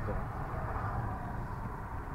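Steady road and engine noise of a moving car, heard from inside its cabin.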